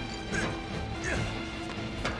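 Action film score playing under a fight, with a couple of crashing impact hits about half a second and about a second in.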